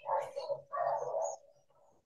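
A soft, muffled two-part 'uh-hum' of agreement, a closed-mouth murmur heard through video-call audio.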